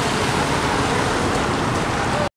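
Steady rushing noise of a wet street with traffic passing, and wind on the microphone.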